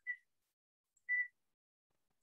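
Two short electronic beeps about a second apart, the second longer and louder.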